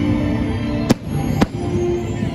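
Two sharp bangs of aerial firework shells bursting about half a second apart, about a second in, over steady show music.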